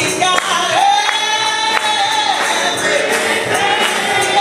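Gospel singing: a woman's voice amplified through a microphone holds long, wavering notes, with other voices singing along. A steady beat of sharp percussive hits falls about every two-thirds of a second.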